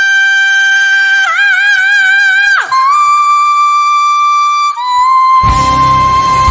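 A male singer holding very high wordless notes with the band dropped out: one long note that wavers a little past a second in and slides down about two and a half seconds in, then two slightly lower held notes. The band's low end comes back in near the end.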